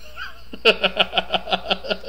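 A man laughing: a run of short, rapid 'ha' pulses, about six a second, that starts about two-thirds of a second in.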